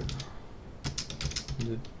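Typing on a computer keyboard: a quick run of keystroke clicks, thickest about a second in.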